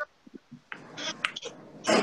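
Brief clicks and short breathy noises picked up by participants' microphones on a video call, with a sharper breath-like burst near the end.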